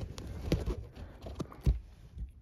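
Irregular plastic clicks and knocks from the white plastic mount and wiring connector of a BMW active headrest being handled and pushed into place, about five sharp clicks spread over two seconds, the loudest about half a second in and near the end.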